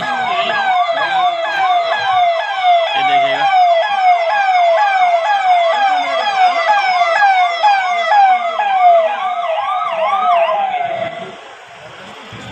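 Police vehicle siren sounding a fast yelp of about two falling pitch sweeps a second, loud and close, as a police motorcade passes. It cuts out about eleven seconds in.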